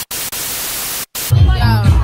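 TV static hiss used as a glitch sound effect, cutting out suddenly about a second in. Music with a heavy bass beat and singing comes in just after.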